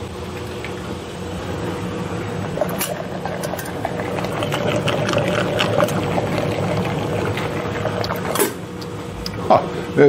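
Steady low hum of running machinery, with a few faint knocks and quiet background talk over it.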